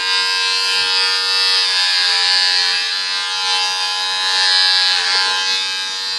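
Electric hair clippers running with a steady buzz while cutting a man's hair, the pitch dipping briefly about five seconds in.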